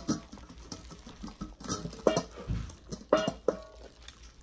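Close-miked eating sounds: wet clicks and smacks of chewing, mixed with the squelch of plastic-gloved hands tearing boiled chicken meat. There are a few brief pitched sounds near the end.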